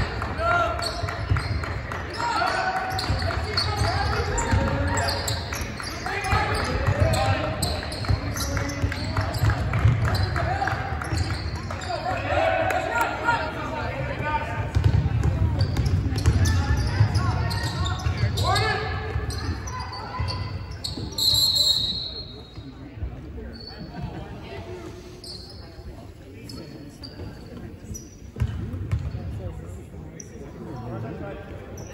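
Basketball being dribbled on a hardwood gym floor during a game, the bounces and indistinct player and spectator voices echoing in the gym. About two-thirds of the way in a referee's whistle blows briefly, and the gym goes quieter as play stops.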